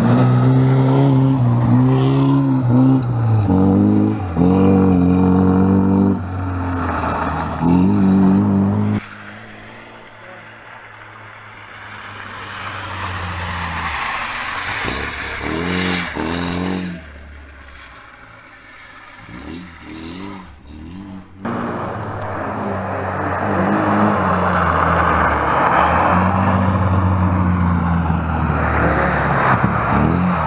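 A Moskvich 412 rally car's engine revving hard, its pitch rising and falling again and again as the car is thrown sideways through the corners, with rough tyre and gravel scrape beneath. About nine seconds in the sound drops to a quieter, more distant pass that swells as the car goes by. It jumps back to loud, close revving about two-thirds of the way through.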